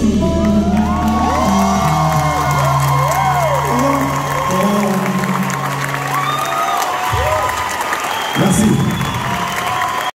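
A live band holds its final notes, which stop a few seconds in, while the audience cheers, whoops and applauds.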